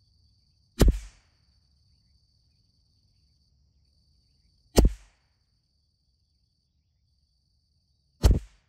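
Two .22 LR rifle shots about four seconds apart, the first about a second in and the second near five seconds. Each is a sharp crack with a short tail of echo.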